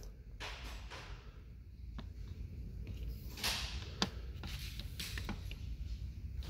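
Faint, scattered clicks and light metallic handling of a hand ratchet being turned over a drawer of tools, with a steady low hum underneath.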